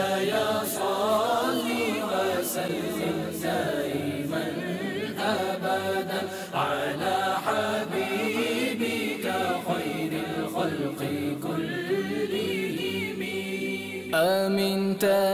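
Background devotional chant: voices singing a slow melody with wavering, drawn-out notes, without instrumental accompaniment.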